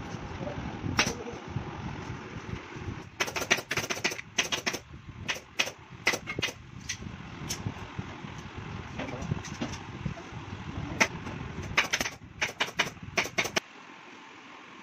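Pneumatic upholstery staple gun firing sharp shots in quick runs, one cluster a few seconds in and another near the end, as fabric is stapled to a sofa frame.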